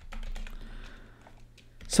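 Typing on a computer keyboard: a quick run of keystrokes, thinning out in the second half.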